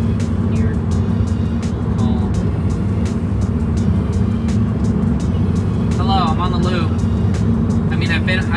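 Steady road and tyre rumble heard inside the cabin of a 2019 Tesla Model 3 electric car at highway speed, with no engine sound under it. A voice is heard briefly about six seconds in.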